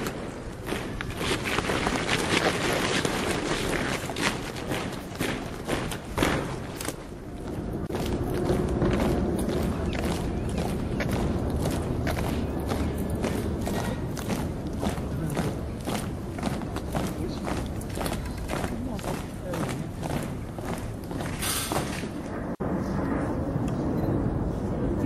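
Military corps of drums, snare side drums and a bass drum, beating a steady marching rhythm of about two beats a second.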